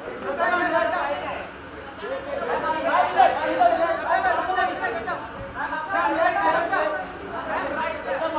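Several voices talking over one another in indistinct chatter.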